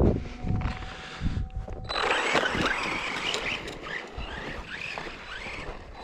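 Typhon 3S electric RC truck driving in deep snow: a faint steady motor tone, then from about two seconds in a louder whir of the motor with short rising revs over the hiss of tyres churning snow.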